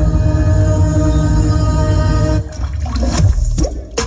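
Demo music played loud through a JIC speaker rig of DN 75 tweeters, LS 12075 mid drivers and LS 18125 low and sub drivers. A held chord sounds over deep bass, then breaks off about two and a half seconds in into falling bass sweeps and sharp hits.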